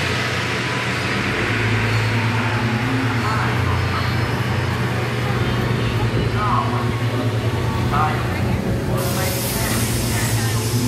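Steady low mechanical hum under an even rush of noise, with faint snatches of people's voices about three and a half, six and a half and eight seconds in.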